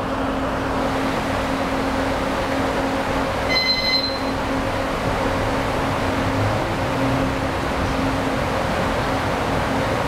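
Steady whir and hum of large electric fans running. A brief high-pitched tone sounds about three and a half seconds in.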